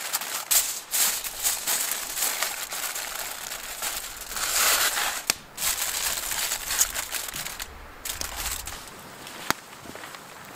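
Aluminium foil crinkling as it is folded and crimped by hand into a food packet, a dense run of crackles that thins out near the end.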